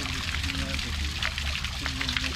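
Water pouring and trickling steadily into a small stone-edged garden pond, a continuous splashing patter.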